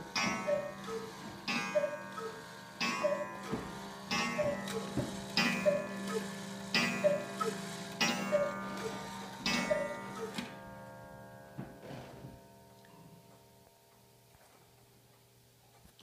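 Antique Black Forest hunter cuckoo clock with an 8-day fusee movement striking nine o'clock: nine two-note cuckoo calls about a second apart, each with a ringing gong strike. The ring dies away over several seconds after the last call.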